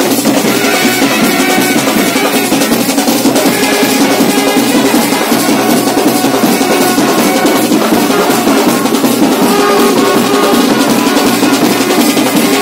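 Live brass band playing: a bass drum and side drum beat a fast, steady rhythm under sustained brass horn notes.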